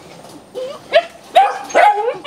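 Belgian Malinois puppies barking in short, high-pitched yips, several in quick succession starting about a second in.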